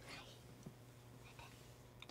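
Near silence: room tone, with one faint short click.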